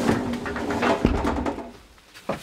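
Light clicks and knocks from handling in a small washroom, with a dull thump about a second in, then quiet.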